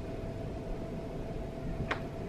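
Steady low hum of room noise with a faint steady tone, like ventilation in an empty classroom, and one brief sharp sound just before the end.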